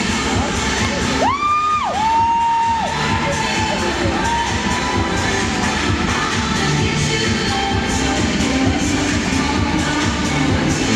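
Music playing through an arena sound system, with the crowd cheering over it. About a second in, a high held whoop rises above the music, followed by two shorter, lower ones.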